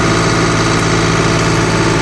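John Deere CRDI diesel tractor engine running steadily. It runs normally, with no warning siren, now that the faulty sensor reporting diesel temperature and pressure has been replaced.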